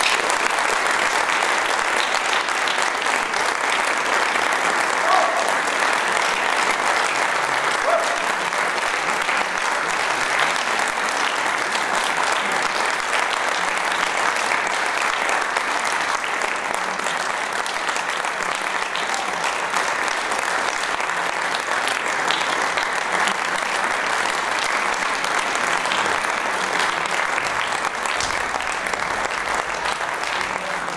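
Concert audience applauding steadily at the end of a performance, a dense, continuous clapping that neither builds nor fades.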